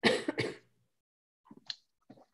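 A person clearing their throat: two quick, harsh bursts at the start, followed by a couple of faint short noises near the end.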